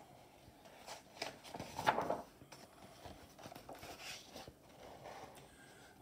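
A page of a large picture book being turned by hand: faint paper rustling and crackling, loudest about two seconds in, with lighter rustles as the page settles.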